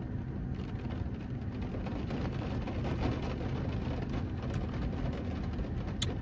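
Steady rain on a parked car, heard from inside the cabin as an even hiss with a few faint ticks over a low steady hum.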